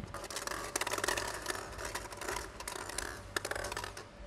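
Hollow plastic draw balls clicking and rattling against one another and the glass bowl as one is picked out and handled: a dense run of small, sharp clicks.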